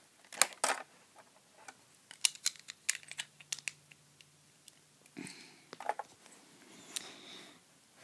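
Lego plastic bricks clicking and knocking as a built-up roof section of bricks is pulled off and handled: a series of short, sharp plastic clicks, a quick cluster of them a couple of seconds in, with softer handling rustle later.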